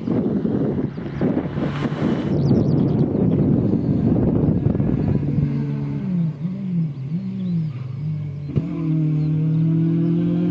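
A Peugeot 106 XSi's four-cylinder petrol engine is driven hard past the microphone. The first half is rough and noisy, with a short hiss about two seconds in. After that the engine note rises and falls several times with the throttle through the course, then holds steady near the end.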